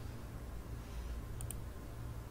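Two quick computer mouse clicks close together about a second and a half in, over a steady low hum.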